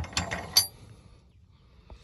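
Metal tie-down strap hooks clinking together in the hand: a few quick metallic clinks in the first half second or so, the last one loudest with a brief ringing, then a faint click near the end.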